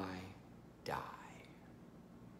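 A man's voice finishing a spoken word, then a short breathy, whispered sound about a second in, followed by quiet room tone.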